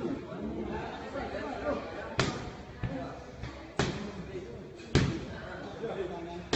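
Three sharp smacks of Muay Thai strikes landing on padded striking gear. The first comes about two seconds in and the others follow roughly a second or so apart, over low voices in the gym.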